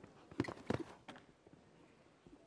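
Hoofbeats of a show-jumping horse cantering on sand arena footing: a quick cluster of footfalls between about half a second and a second in.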